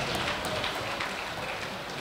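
Ice rink background noise: a steady, even hiss with a few faint clicks in the first half second.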